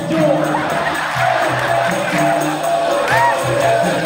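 Dikir barat ensemble performing: voices sing held and gliding notes over a steady beat of hand clapping and percussion from the seated chorus.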